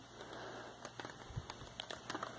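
Faint handling noise: a hand moving a Lego brick magazine over a fabric bedspread, with a few light plastic ticks and a soft thump about halfway through.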